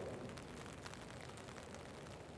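Light rain falling, a faint steady hiss.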